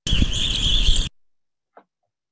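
A recording of evening grosbeak calls played back through the webinar audio: a high, wavering chorus of calls over hiss and a low rumble. It starts abruptly and cuts off after about a second.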